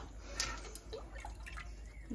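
Wet cooked plantain pulp and liquid dripping through a metal colander into an aluminium pot, faintly, with one light tap about half a second in.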